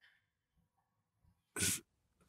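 A pause with near silence, then near the end one short, sharp breath noise from a man.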